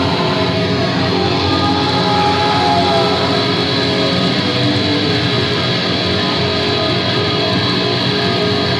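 Black metal band playing live, distorted electric guitars over bass in a dense, steady wall of sound.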